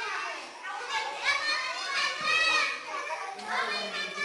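Many young children's high voices talking and calling out at once, overlapping.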